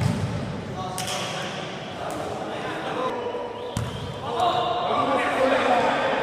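Futsal ball being kicked and bouncing on a hard gym floor, several sharp knocks echoing in the hall. Players shout over the play, louder in the second half.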